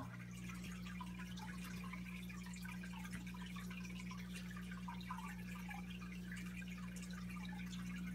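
Faint dripping and trickling of aquarium water, with small scattered splashes, over a steady low electrical hum.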